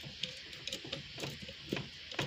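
Faint, irregular small clicks and taps of hands working the clamps and plastic air intake ducting in a car's engine bay.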